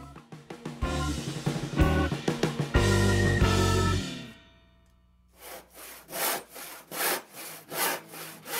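Background music with a heavy bass beat for the first half, ending abruptly. After a short pause, a hand saw crosscutting a pine board at a knife line, strokes coming about two a second.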